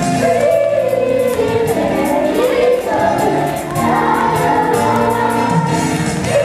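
A young cast singing together in chorus over a musical accompaniment in a live stage performance, recorded from the audience.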